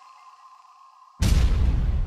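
The tail of a news-channel intro jingle: a faint lingering tone, then a sudden loud sound effect with a deep rumble that starts just over a second in and lasts under a second.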